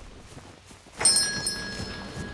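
A bright, bell-like chime strikes suddenly about a second in, with a quick second strike, and its ring carries on. Before it there is only quiet background.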